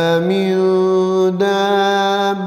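A man's voice chanting a Quranic verse in melodic recitation, drawing out one long held note that shifts slightly in pitch twice.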